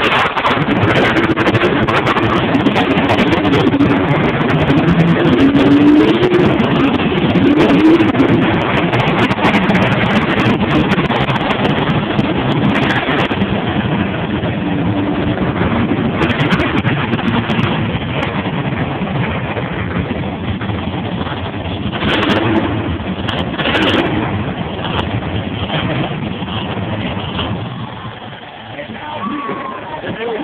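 Monster truck engines running and revving, the pitch rising and falling, loudest in the first third and easing off later.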